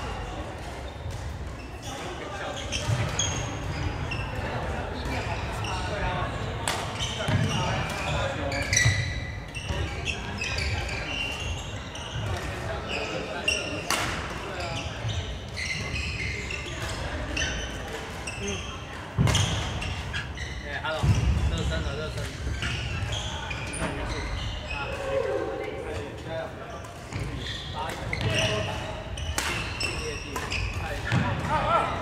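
Indoor badminton doubles play: sharp racket hits on the shuttlecock at irregular intervals and short squeaks of shoes on the wooden court floor, over a background of voices in a large, echoing hall.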